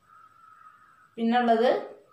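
A woman's voice saying one short word in Malayalam about a second in, after a brief pause. A faint, steady, high-pitched hum sits in the background during the pause.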